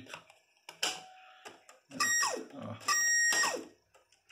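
A click from the JVC UX-A3 cassette deck's buttons, then two short high-pitched beeping tones with falling sweeps, about a second apart. The deck's tape mechanism is faulty.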